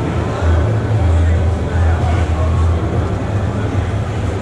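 Indistinct background voices over a loud, steady low hum.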